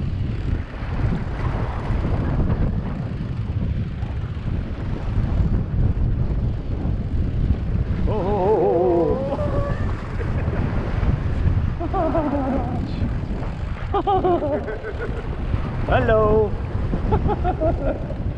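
Wind buffeting the microphone over the steady low running of a boat's engine; voices call out several times in the second half.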